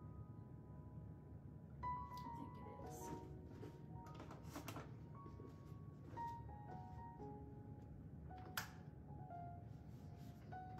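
Gentle instrumental background music, a melody of single held notes over a soft low bed, with a few light clicks and knocks, the loudest about two seconds in and near the end.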